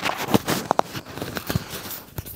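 Scattered light clicks and rustles of handling noise from a hand and clothing close to the microphone.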